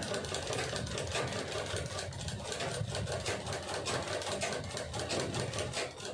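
Black Sandeep domestic sewing machine stitching through woven plastic rice-sack fabric: a fast, steady clatter of needle strokes that eases off at the very end.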